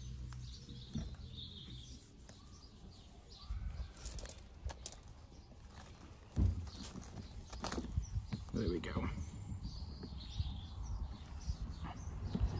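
Birds chirping faintly over a low background rumble, with scattered light knocks and rubbing and a single thump about six seconds in.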